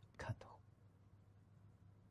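A brief, soft vocal sound from the narrator's voice just after the start, then near silence.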